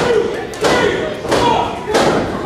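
Wrestling strikes landing in the ring corner: three sharp thuds about two-thirds of a second apart, with voices shouting from the crowd.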